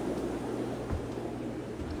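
Steady room tone of a shop full of running aquariums: a constant low hum under an even hiss, with one soft thump about a second in.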